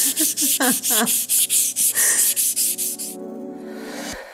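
600-grit sandpaper on a hand sanding block rubbed quickly back and forth over a flat metal plate, about five strokes a second, stopping about three seconds in.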